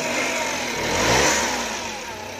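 Suzuki Carry's 660cc K6A three-cylinder engine running with its bonnet open, revved once by hand at the throttle linkage: the engine note rises about half a second in, peaks just past the middle, and falls back toward idle.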